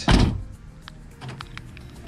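Honda S2000 power door locks clunking once in response to the remote key fob: a short loud thunk right at the start, then a few faint clicks. The newly programmed remote now works the locks.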